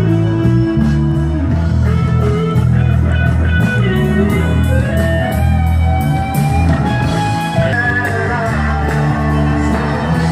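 Live rock band playing, with electric guitars and bass over a drum kit keeping a steady beat.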